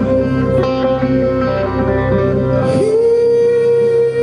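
Live rock band playing a slow song: guitar with a singing voice. About three-quarters through, a long held note slides up and is sustained.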